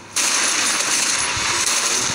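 A trailer sound effect: a loud, hissing, metallic-sounding noise that starts suddenly just after the cut from black and holds steady for about two seconds before fading.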